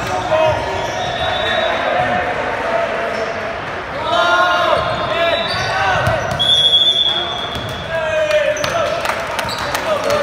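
Indoor volleyball game in an echoing gym: players shouting and cheering as a rally ends, with a short referee's whistle blast about six and a half seconds in. Sharp thuds of the volleyball bouncing and being hit sound through the second half.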